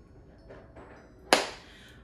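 A single sharp slap a little past halfway through, against faint room sound.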